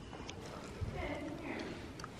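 Faint hoofbeats of a horse walking on the sand footing of an arena, with a couple of soft thuds about a second in.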